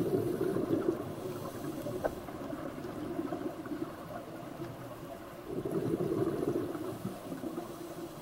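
Scuba diver's exhaled breath bubbling out of the regulator, picked up underwater: a gurgling rumble at the start and again about five and a half seconds in, with quieter underwater wash between.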